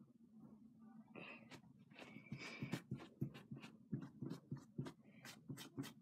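Cotton round soaked in nail polish remover scrubbed over fingernails: faint, irregular scratchy rubs and clicks, starting about a second in.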